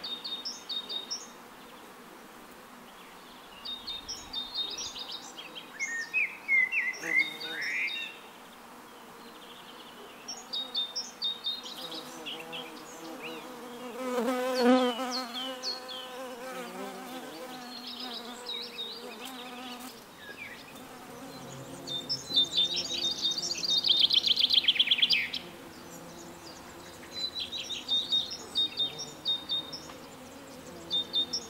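A bee buzzing in flight, swelling to its loudest about halfway through and carrying on more faintly afterwards. Small birds chirp in short bursts throughout, with a rapid chirping trill about three quarters of the way in.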